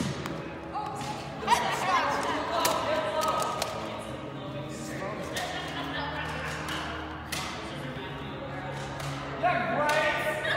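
Indistinct voices of several people talking over music in the background, with a few sharp knocks and thumps, the loudest about a second and a half in. The voices pick up again near the end.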